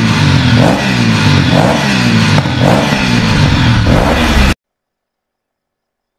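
Motorcycle engine revving over and over, loud, then cutting off suddenly about four and a half seconds in.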